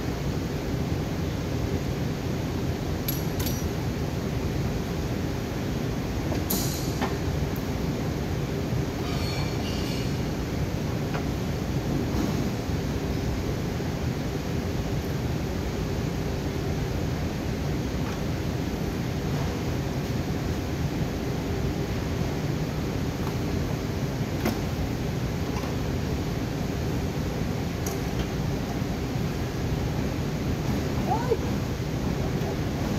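Steady low rumble of workshop background noise throughout. A few light metallic clinks and a short rattle come about ten seconds in, as a car's radiator assembly is handled and fitted at the front of the car.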